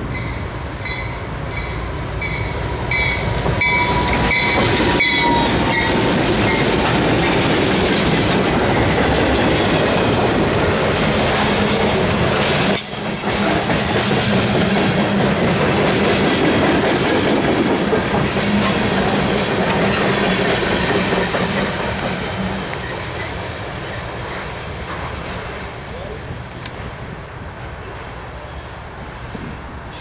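A CSX freight train passing close by. A ringing tone repeats about twice a second as the locomotive approaches. Then the loud rumble and clatter of tank cars and boxcars rolling past lasts about twenty seconds and fades as the train moves away. A steady high wheel squeal comes in near the end.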